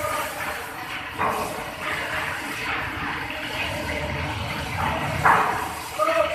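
Cutting torch working overhead steel plating: a steady hissing rush, with two sudden louder bursts, one about a second in and a bigger one near the end.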